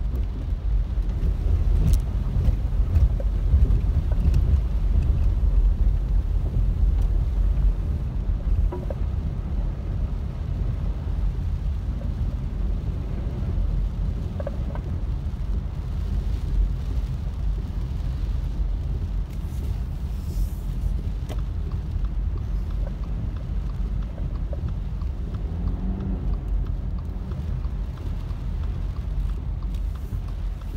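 Steady low rumble of a car driving on a rain-flooded road, heard from inside the cabin: tyres running through standing water, with a few faint ticks.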